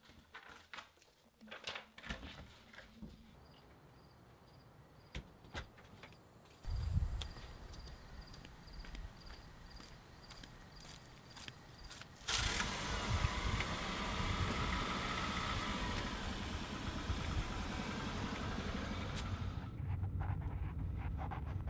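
Scattered clicks and knocks of handling, then a car engine starting with a faint repeated beep, and about twelve seconds in, the steady engine and road noise of the car driving, heard from inside the cabin.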